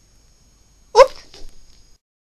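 A small dog barks once, short and sharp, about a second in, followed by a fainter second bark or yip about half a second later.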